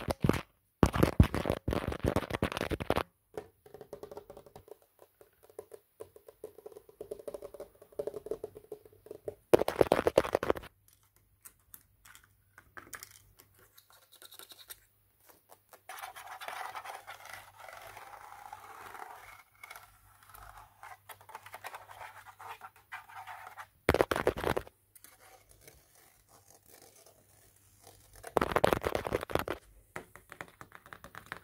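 Fast fingernail tapping and scratching on a phone's rugged plastic case and camera lens. It comes in loud rapid flurries at the start, about ten seconds in, and twice near the end, with quieter, softer scratching between them.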